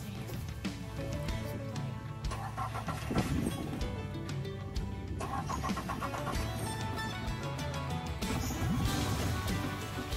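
Suzuki 140 four-stroke outboard being cranked over and over, trying to start but not yet catching, its fuel system just drained of water and fitted with new filters. Background music plays along with it.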